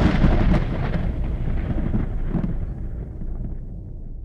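Thunder rumbling with rain, fading steadily away, with two fainter cracks about half a second and two and a half seconds in.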